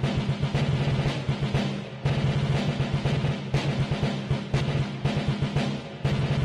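Recorded march music for an ice dance routine: rapid, dense drumming over sustained low notes, with a brief break in the phrase about two seconds in.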